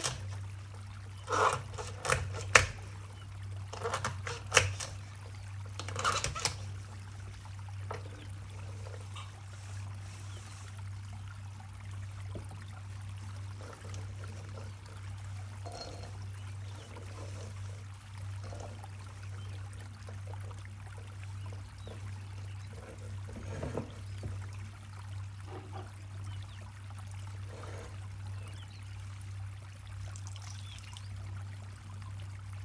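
A kitchen knife chopping through celery stalks onto a wooden cutting board: about six crisp cuts in the first six seconds. After that there are only faint sounds of the cut pieces being handled, over a steady low hum.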